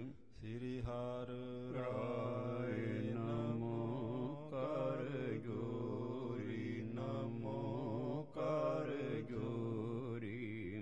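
A man chanting Gurbani verses in a drawn-out melodic recitation, holding long wavering notes in phrases of one to three seconds with short breaths between them, over a steady low drone.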